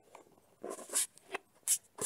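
A few short, irregular scratchy rustles and scrapes, handling noise close to the microphone, the loudest about a second in.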